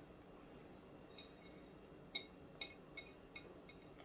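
Near silence with a few faint, short clicks and taps as chopped onion is scraped off a ceramic plate into a bowl.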